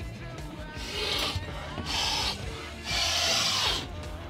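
A person sniffing the air three times, long noisy sniffs about a second apart with the last the longest, over quiet background music.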